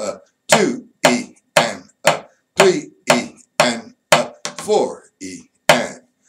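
Drumstick strokes on a drum head tapping out a written eighth- and sixteenth-note rhythm, about two strokes a second with a few quicker ones near the end. A man's voice counts along with the strokes.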